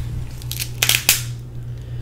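Dungeness crab leg shell being cracked and pulled apart by hand: a few sharp cracks and crunches between about half a second and a second in.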